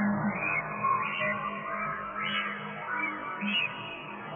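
Alchemy software synthesizer playing an ambient soundscape made by spectral resynthesis of an imported image, through a Black Hole convolution reverb: a dense sustained drone with little whistles rising and falling in pitch about every half second as an LFO sweeps the bandpass filter's high cut.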